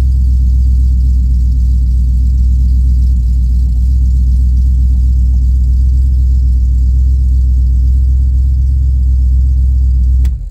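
A car engine idling steadily, with a deep, even exhaust note.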